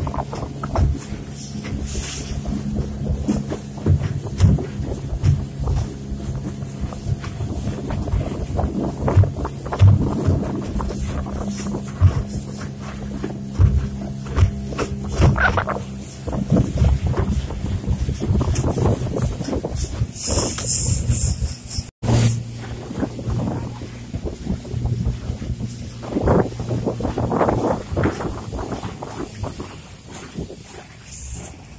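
Outboard motor of a small aluminium boat running across choppy river water, with irregular knocks and wind buffeting the microphone. Music plays along with it.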